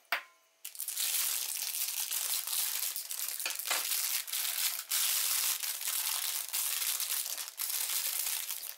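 Thin clear plastic packaging bag crinkling and crackling continuously as it is torn open and handled, full of marshmallows being tipped out.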